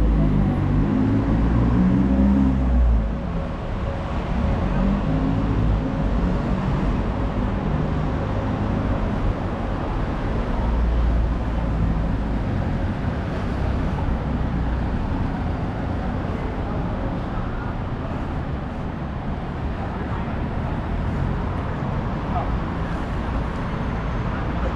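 City street traffic ambience: vehicles running along the road as a steady noise bed, with a heavier low rumble in the first few seconds and again around ten seconds in, and brief snatches of passers-by talking.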